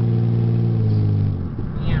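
An engine drones steadily, dips slightly in pitch and cuts off about a second and a half in, leaving a low rumble.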